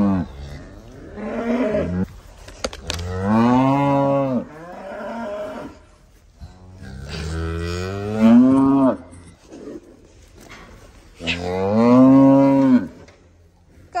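Beef cattle mooing: about four long calls a few seconds apart, each rising and then falling in pitch.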